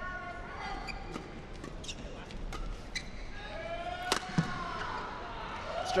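A badminton rally: rackets striking the shuttlecock in a series of sharp hits, about half a second to a second apart, the loudest about four seconds in. Shoes squeak on the court mat between the hits.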